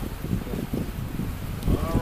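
Wind buffeting the microphone on an open boat: an uneven low rumble in gusts. A voice begins near the end.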